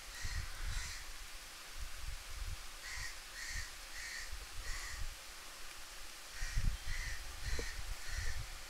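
A crow cawing repeatedly in the background, a string of short, harsh calls about half a second apart in several bursts, with low thumps underneath.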